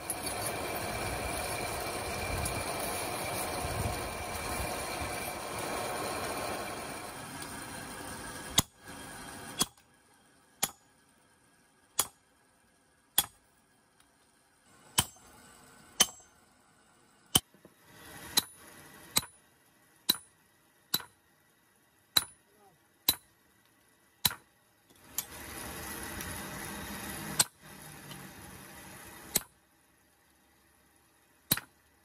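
Hammer blows on a hand chisel cutting through a steel knife blade laid on a brick, about one sharp metallic strike a second with a short ring after each. The strikes follow several seconds of steady rushing noise, and a second short stretch of that noise comes near the end.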